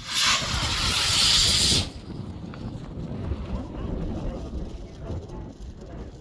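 Estes D12-5 black-powder model rocket motor firing at lift-off: a loud hiss that cuts off after under two seconds as the motor burns out. Gusty wind then rumbles on the microphone.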